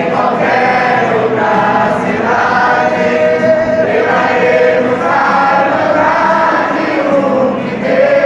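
A large congregation singing a hymn together, many voices held on long sustained notes that move slowly from note to note, loud and unbroken in a reverberant hall.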